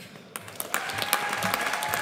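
An audience clapping: the applause starts about a third of a second in and quickly builds into dense, steady clapping. About two-thirds of a second in, one long steady high note rises above it and holds.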